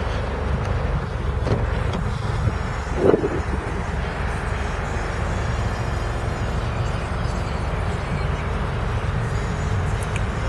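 Steady low rumble of wind on the microphone and outdoor background noise, with a brief louder sound about three seconds in.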